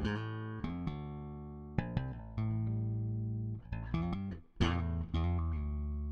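Solo four-string electric bass guitar playing a slow tune in chords and melody notes, each plucked note starting sharply and ringing on, with a short break about four and a half seconds in before the next chord.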